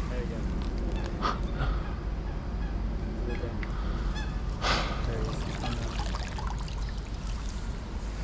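Geese honking a few times over a steady low rumble, with a short burst of noise just before five seconds in.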